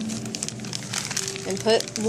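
Thin plastic zip-top bag crinkling in a child's hands as he works it open, a quick run of small crackles.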